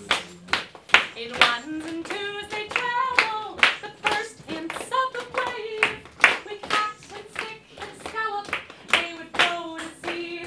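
A woman singing a song live, with sharp hand claps through it from people clapping along in time with the song.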